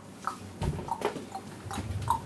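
Soft handling sounds of a Bible being leafed through on a wooden pulpit, close to the microphone: a low thump a little over half a second in and scattered light ticks.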